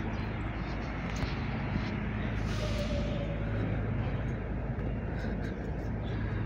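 Steady street traffic noise with a low, even engine hum, and a brief hiss about two and a half seconds in.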